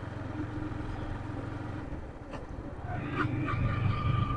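Yamaha MT-15 V2's 155 cc liquid-cooled single-cylinder engine running as the motorcycle is ridden along. It grows louder about three seconds in, with a higher steady tone joining it.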